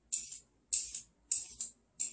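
Vegetable peeler shaving strips off a raw carrot: three short scraping strokes, evenly spaced about 0.6 seconds apart, each a brief hiss.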